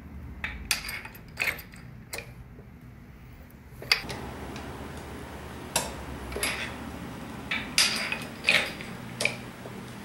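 A steel bar on the pinion flange of a Ford 8.8 limited-slip rear axle being levered round by hand, giving a dozen or so sharp metallic clicks and clanks at irregular intervals.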